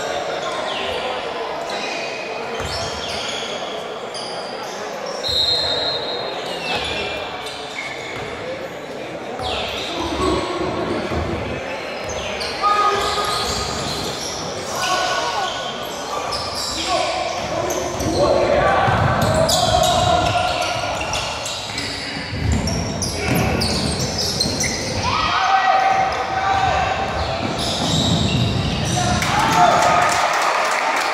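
Basketball game in a large, echoing gym: a ball bouncing on the hardwood floor as it is dribbled, short squeaks of sneakers, and players' voices calling out, busier and louder in the second half.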